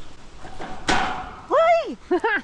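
A single sharp clank about a second in, from the steel-grating deck of a suspension footbridge underfoot, followed by a person's drawn-out exclamation that rises and falls in pitch.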